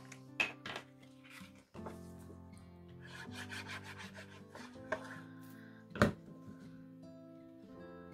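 The tip of a liquid glue bottle rubbing and scraping across the back of a cardstock panel, with paper handling and a few light taps, the sharpest about six seconds in. Soft background music runs underneath.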